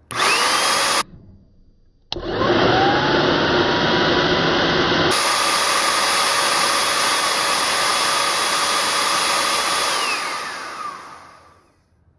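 Bissell vacuum cleaner motor with its impeller cover off, switched on for about a second, cut, then switched on again. It whines up in pitch as it spins up, runs very loud for about eight seconds, then is switched off, the whine falling as it winds down and fades.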